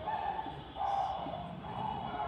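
Whiteboard marker squeaking as it writes, three short squeaks about half a second each.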